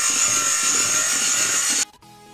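Electric hand mixer running steadily with a high whine, its twin beaters whipping cream cheese frosting in a stainless steel bowl; it cuts off abruptly near the end.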